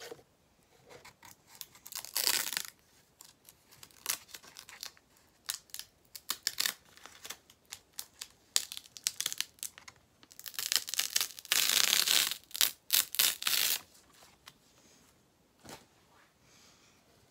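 Adhesive vinyl lettering being rubbed down and peeled by hand on a wooden sign: irregular scratchy rubbing and ripping sounds, with the longest peeling rips about two seconds in and again from about ten to thirteen and a half seconds in.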